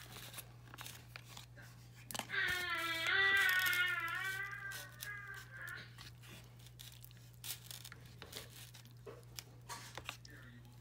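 Plastic film lid crinkling as it is peeled back off a microwave meal tray, then a plastic spoon clicking and scraping in the tray. About two seconds in, a high-pitched wordless voice sounds for about three seconds.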